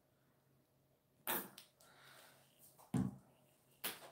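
Quiet handling sounds of a plastic paint squeeze bottle being used over a split cup: a short rustle about a second in, then two sharp clicks, one about three seconds in and one near the end.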